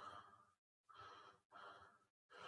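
Near silence: faint room tone that drops out completely twice.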